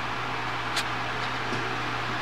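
Steady low hum with an even hiss, the background noise of the room, and one faint click about a second in.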